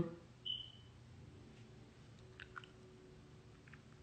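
Mostly quiet room, with a brief high tone about half a second in and a few faint small clicks later on.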